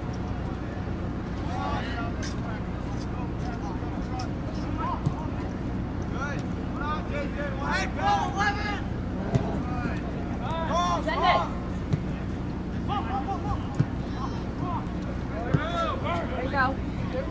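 Distant shouts and calls from soccer players and spectators across an open field, coming in short bursts that grow more frequent in the second half, over a steady low hum. A few short knocks sound among them.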